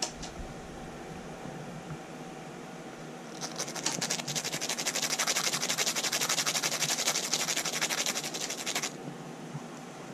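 A nail file rasped in rapid, even back-and-forth strokes for about five seconds against a guinea pig's front teeth, trimming its overgrown incisors.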